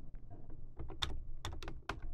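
Typing on a computer keyboard: a quick, irregular run of key clicks as a name is typed in.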